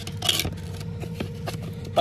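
Grass sod rustling and scraping as a hand lifts and folds it over a catch basin grate: a short rustle about a quarter-second in, then a few light clicks. A steady low hum runs underneath throughout.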